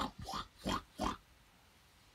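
Four short pig-like oinks in quick succession, all within about the first second, then quiet.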